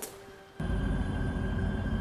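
Ominous, tense background score: after a brief lull, a steady low rumbling drone with faint held tones starts about half a second in.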